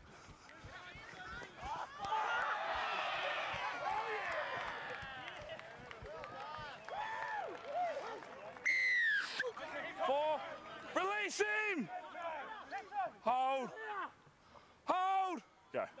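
A crowd cheering a try, a swell of many voices that rises about two seconds in and fades over several seconds. Then come loud separate shouts from players and spectators, the last just before the end, where a player yells "Go".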